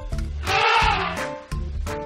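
Elephant trumpeting, one call that rises and falls in pitch, played over background music.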